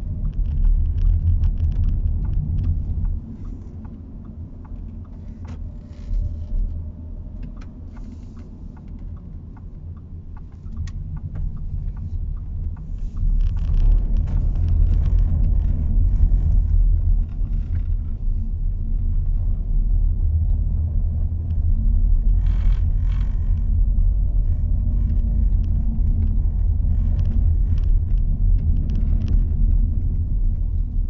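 Low road and engine rumble inside the cabin of a 2021 Audi A4 Avant driving. It eases off to a quieter stretch early on, then grows louder again about halfway through and stays steady.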